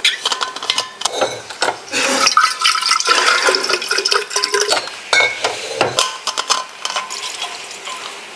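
Water poured from a glass bottle into an insulated bottle, with the clicks and knocks of the bottles and cap being handled.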